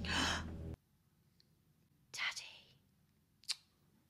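A sharp, breathy gasp that cuts off abruptly under a second in. Then it is quiet apart from a short breath sound about two seconds in and a brief click near the end.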